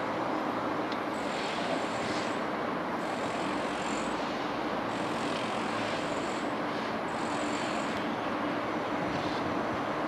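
CP 2400-series electric commuter train moving slowly, a steady rumble and hum of its motors and wheels, with a faint high whine that comes and goes.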